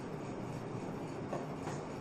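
Steady low room noise, a hum and hiss with no distinct events.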